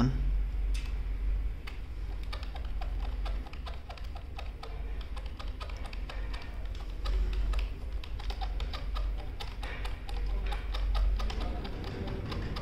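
Computer keyboard's F7 key tapped over and over, a long run of quick key clicks, over a steady low hum.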